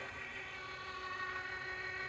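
Atlas-150 clay target trap's electric motors running with a low, steady whine as the machine repositions itself after firing.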